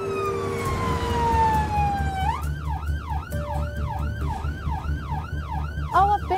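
Ambulance siren: a wail sliding slowly down in pitch, then about two seconds in switching to a fast yelp that rises and falls about three times a second, over the low rumble of the van's engine.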